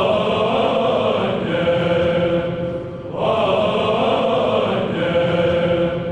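Orthodox church chant in the Byzantine style: voices singing long held notes over a steady low drone, with a short break just before the middle.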